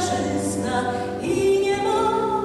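A choir singing, holding long sustained notes, with a change of chord about 1.3 s in.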